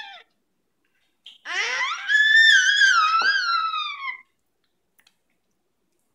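A baby's long, high-pitched squeal. It starts about a second and a half in, rises, wavers and falls in pitch over nearly three seconds, then stops.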